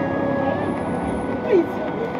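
A steady, noisy background with thin held tones of background music running through it; about one and a half seconds in, a woman's voice rises in a distressed cry.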